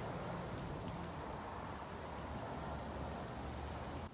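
Steady breeze noise outdoors, an even hiss with a low rumble beneath it, with a couple of faint ticks.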